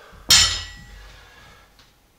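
A loaded barbell set down onto rubber floor mats: one loud clank about a third of a second in, fading over about a second.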